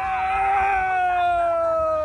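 A rider's high-pitched scream on a water-ride plunge, held as one long note that slowly sinks in pitch.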